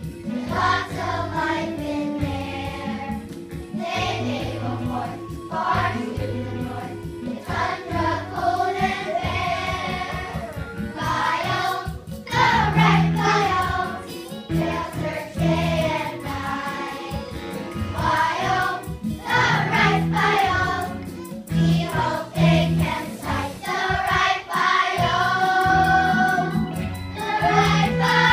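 A group of young children singing a song together in chorus, over a musical accompaniment with a repeating low bass pattern.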